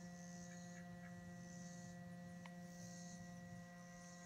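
Faint steady hum made of several constant tones, with a faint high hiss that swells and fades a few times.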